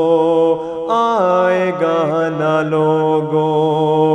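A male voice singing an Urdu devotional nazam a cappella. It holds long drawn-out notes with a melodic turn about a second in, over a steady low drone.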